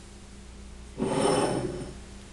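Handling noise: something rubbed or shifted close to the microphone for just under a second, starting about a second in.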